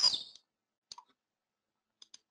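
A faint double click about a second in, a computer mouse or key pressed and released to advance a presentation slide, with another small click at the end. The tail of a spoken word trails off at the start.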